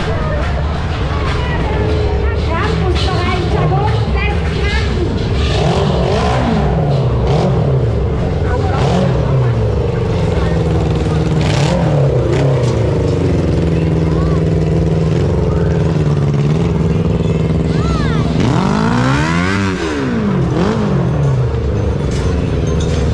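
An engine running steadily and revving up and down several times, with the biggest rev about nineteen seconds in, alongside people's voices.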